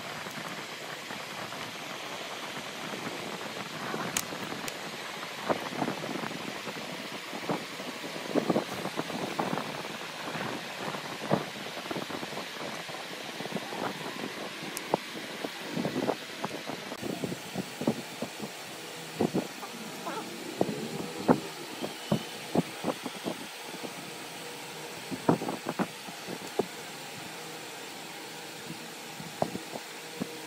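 Small wooden blocks being set down by hand and knocked against one another, giving irregular light clicks and taps over a steady background hiss.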